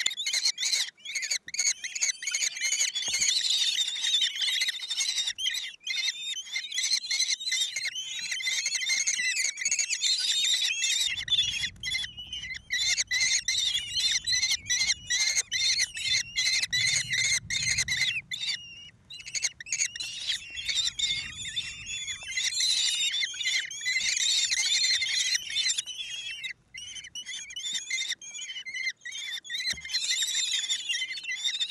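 Common kestrel nestlings giving shrill, rapid begging calls almost without pause as they are fed in the nest box. A low rumble of movement sounds in the middle.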